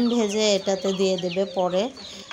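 A person's voice speaking, in the same pitched, broken pattern as the talk around it.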